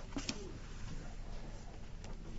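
A bird cooing briefly, low-pitched, near the start, over steady background hiss and a low hum.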